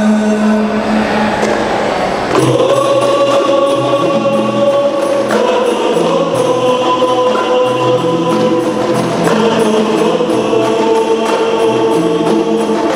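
A men's group singing a qasidah (Islamic devotional song) together in long, held notes, accompanied from about two seconds in by a steady beat on rebana frame drums.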